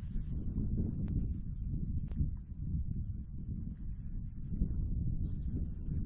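Wind buffeting the microphone on an open hillside: a steady low rumble, with two faint clicks about one and two seconds in.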